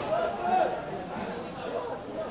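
Men's voices shouting and calling out across a football pitch, with one loud call about half a second in.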